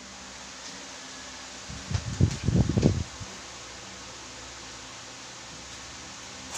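A steady fan-like hum and hiss, broken about two seconds in by a loud, low, fluttering rumble lasting about a second, like air buffeting the microphone.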